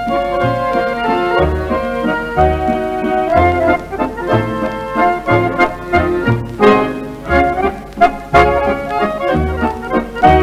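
A mazurka played by an accordion quartet with guitar and bass: a chromatic button accordion carries the melody in held notes over bass notes that fall about once a second, with short chord strokes in between.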